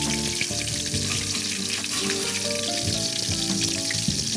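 Food frying in a hot pan, a steady sizzle, with light background music playing over it.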